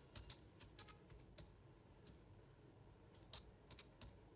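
Faint keystrokes on a computer keyboard: quick taps in short runs, with a pause of about two seconds between them.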